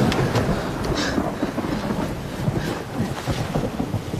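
Wind blowing across the microphone, an uneven low rushing noise that rises and falls in gusts.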